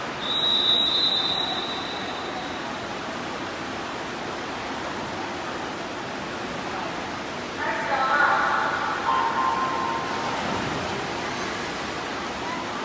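A referee's whistle gives a long high blast in the first two seconds, the signal for the swimmers to step up onto the starting blocks. About seven and a half seconds in, the electronic start signal sounds for the dive. A steady hiss of pool ambience and crowd noise runs underneath.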